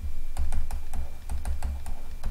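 Pen stylus tapping and scratching on a drawing tablet as terms are handwritten, a quick run of short sharp clicks, about five a second, over a steady low hum.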